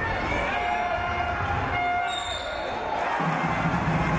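A basketball bouncing on a hardwood court during play, over arena sound with music.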